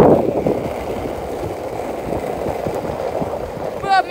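Skateboard wheels rolling downhill over rough, cracked asphalt: a steady rumble, a little louder at the very start.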